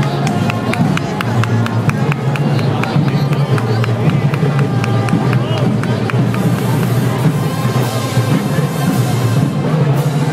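Parade band music with drums, with spectators talking over it.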